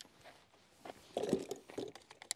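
Shotgun shells and a semi-automatic shotgun's loading port being handled: quiet at first, then about a second in a short run of light clicks and rustling as a shell is picked up and fed toward the magazine tube.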